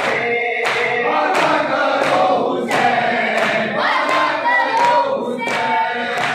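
A group of men chanting a noha in unison, with rhythmic matam (chest-beating by hand) striking a steady beat about every 0.7 seconds beneath the voices.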